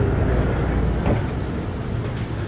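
Canal water taxi's engine running with a steady low rumble while the boat is moored at the pier.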